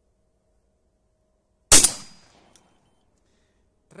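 A single 12-gauge shotgun shot a little under two seconds in, fired with a handloaded shell carrying a powerful Nobel Sport primer; the report dies away over about half a second.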